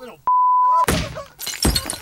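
A loud, steady single-pitch beep lasting just over half a second, like a censor bleep, followed by two sharp crashes about one and one-and-a-half seconds in.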